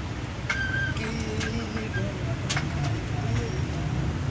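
Faint voices over a steady low outdoor rumble, with a brief high tone about half a second in and a few sharp clicks.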